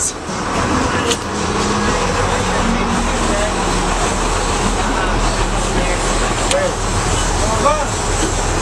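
Fishing boat's engine running with a steady low hum under the wash of wind and water as the boat moves; the hum comes up about a second and a half in and then holds steady.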